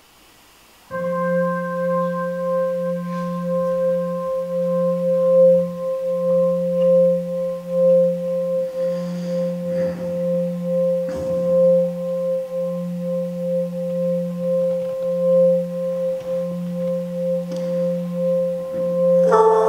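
A sustained musical drone starts abruptly about a second in: a low tone and a higher tone held steady, with a slight pulsing in level.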